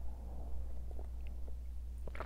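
Faint sips and swallows of a drink taken from a mug, picked up close by a clip-on microphone, over a steady low hum.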